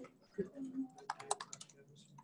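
Typing on a computer keyboard: a quick run of key clicks about a second in, with a faint voice murmuring in the background.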